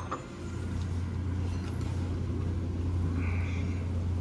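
A steady low hum, with a brief faint higher tone a little past three seconds in.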